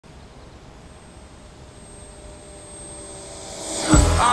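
Electric RC foam plane (Bixler) with its motor and propeller whining as it comes in low, growing steadily louder near the end as it reaches the microphone.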